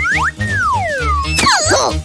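Cartoon comedy sound effects over background music: thin whistle-like tones sliding in pitch, a short rise at the start, then longer falling glides, and a busier flurry of glides about one and a half seconds in.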